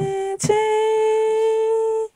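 A voice humming two long held notes, the second a little higher, with a brief break about half a second in.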